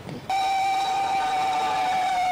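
A horn sounding one loud, steady, high note that starts suddenly about a third of a second in and holds, sagging slightly in pitch near the end.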